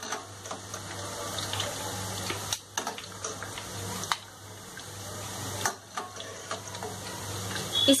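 Boondi, small drops of gram-flour batter, sizzling as they fry in hot oil in a steel pan, with a steady low hum underneath. The sizzle dips briefly twice.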